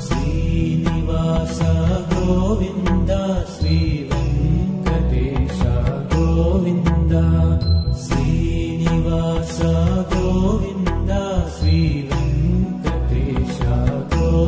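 Background devotional music: a Sanskrit chant sung over instrumental accompaniment.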